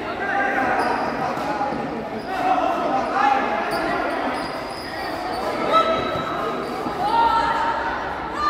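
Indoor futsal play in a large, echoing gymnasium: the ball being kicked and bouncing on the hard court, with players and spectators shouting throughout. One sharper thump stands out a little before six seconds in.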